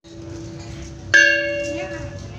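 A small bossed bronze kettle gong in the row of a Balinese gamelan, struck once with a mallet about a second in and left ringing with several bright overtones that slowly die away. A low gong tone from an earlier strike is already ringing before it.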